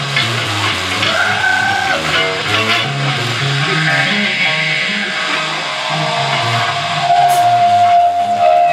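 Live band playing amplified: an electric bass line of short moving notes with electric guitar over it. A held higher guitar note comes in about seven seconds in.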